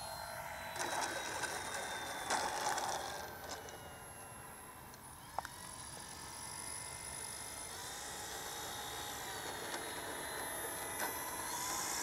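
Radio-controlled model airplane's motor heard faintly, its whine falling slowly in pitch over the first few seconds as it throttles back to land, then picking up a little later as the plane rolls along the runway. A single short click about five seconds in.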